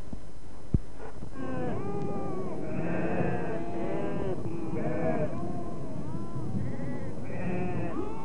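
Many penned livestock bleating at once, overlapping calls rising and falling, from about a second in onward. A single sharp click comes just before the calls begin.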